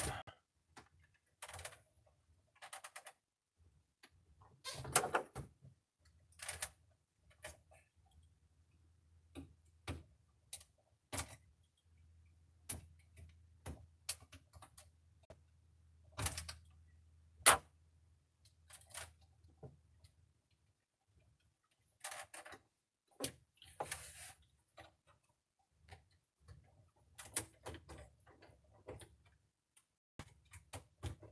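Irregular clicks, taps and knocks of hands and a screwdriver working on the plastic back housing of an LCD monitor being taken apart, with one sharper knock a little past the middle.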